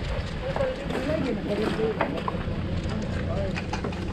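Indistinct voices of people talking at a distance, over a steady low rumble and scattered light clicks from a GoPro camera strapped to a walking dog's back.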